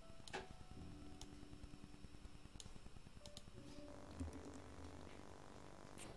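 Near silence with a few faint, scattered computer mouse clicks over a faint low hum.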